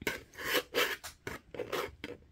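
A small scraper tool scraping leftover paper die-cut scraps off a die-cutting mat, in quick repeated rasping strokes, about five in two seconds.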